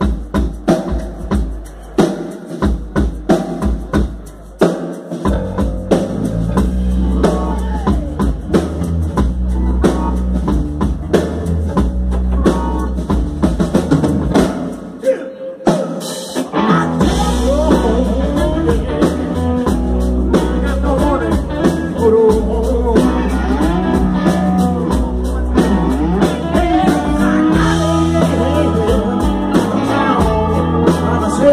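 Live soul band with electric guitars and drums playing: sparse drum-led groove at first, the full band filling in about five seconds in, a brief break about halfway, then a man's voice singing over the band.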